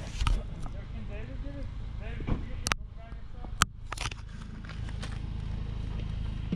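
Indistinct voices of people talking a little way off, over a steady low outdoor rumble, with two sharp clicks a little under a second apart near the middle.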